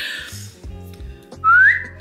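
A single short whistle about one and a half seconds in, sliding up in pitch and holding briefly at the top, over quiet background music.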